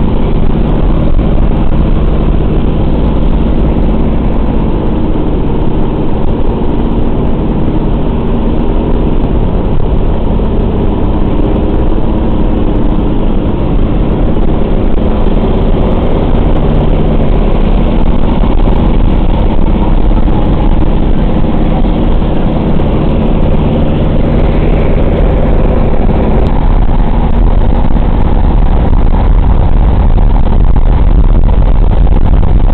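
The four Pratt & Whitney R-1830 radial engines of a B-24 Liberator bomber droning steadily in flight, heard loud from inside the rear fuselage together with the rush of air through its open windows.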